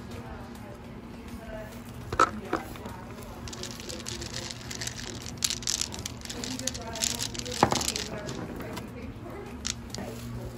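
Tumbled crystal stones clicking and rattling against each other as a hand rummages through a wicker basket of them, with a few sharper clicks, the loudest about two seconds in and again a little before eight seconds in.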